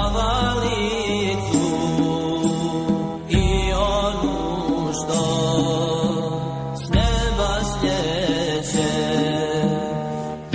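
Solo chanted singing with a wavering, ornamented melody over a low sustained drone, with new phrases starting about three and seven seconds in.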